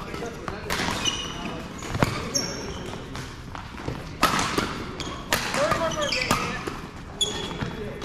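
Badminton rally in a large hall: rackets strike the shuttlecock with sharp hits about once a second, while court shoes squeak briefly on the floor between shots.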